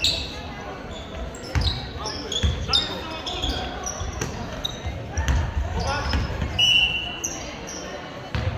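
Indoor basketball play on a hardwood sports-hall floor: the ball bounces a few times at irregular intervals, shoes give short high squeaks on the court, and players call out, all echoing in the large hall.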